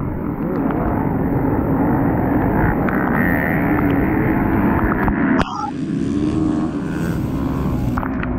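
Off-road motorcycle engines running hard, the rider's own bike close and loud with other dirt bikes around it, its pitch rising and falling as the throttle works. The sound changes abruptly about five and a half seconds in.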